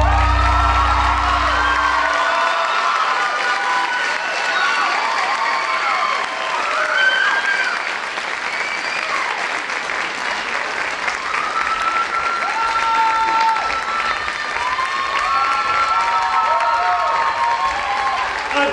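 Audience applauding and cheering, with many high whoops and shouts over the clapping. A low note from the music fades out about two seconds in.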